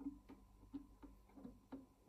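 Classical guitar plucked softly in short, detached notes, about three a second, each cut off quickly after a light click of the attack.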